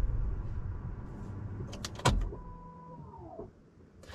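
The car's low running rumble fades away as it comes to rest. About two seconds in there is a sharp click, then a small electric motor in the car whirs steadily for about a second and winds down in pitch as it stops.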